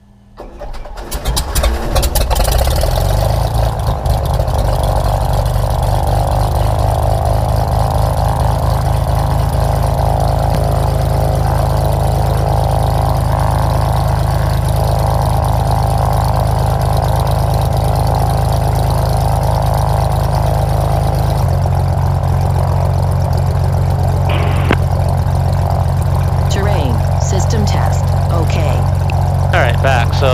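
A light aircraft's piston engine starts about a second in, catches and comes up to speed within a couple of seconds, then runs steadily with the propeller turning. Its note shifts about two-thirds of the way through and then settles again.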